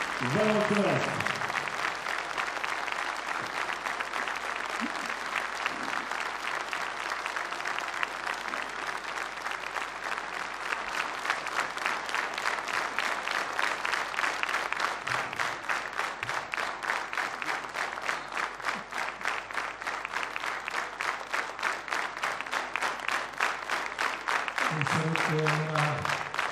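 A large concert audience applauding; about ten seconds in, the clapping falls into a steady rhythmic beat in unison.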